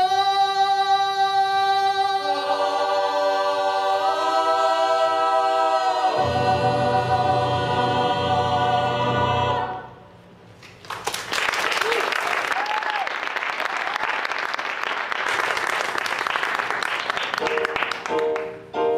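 A theatre cast singing held chords together, the harmony shifting twice before they cut off at once about ten seconds in. An audience then applauds.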